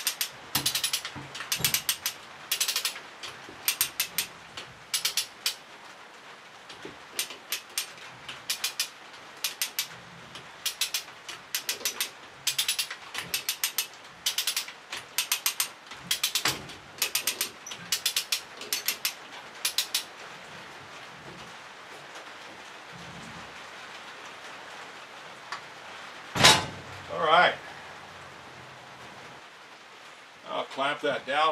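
A ratchet clicks in quick runs as bolts are worked loose on a steel sawmill carriage, for most of the first twenty seconds. Near the end there is a brief loud squeal that wavers in pitch.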